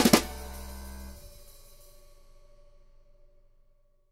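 Background music ending on a final drum and cymbal hit right at the start, whose ring fades away over about three seconds.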